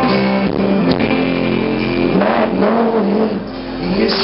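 Live band playing an instrumental stretch of a song, with strummed guitars to the fore over keyboard and drums.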